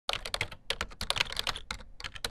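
Computer keyboard typing sound effect: a rapid, irregular run of key clicks, matching text being typed out on screen.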